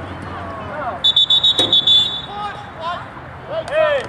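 A referee's pea whistle blown in one trilling blast of about a second, with a sharp crack partway through it and shouting voices before and after.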